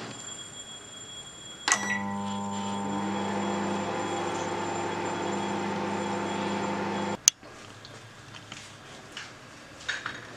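Microwave oven switching on with a click, running with a steady low hum for about five seconds, then cutting off with a sharp click.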